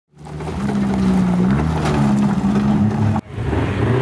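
Banger race car engines running on the track, the engine note dipping and rising again about a second and a half in. The sound breaks off for an instant about three seconds in and comes straight back.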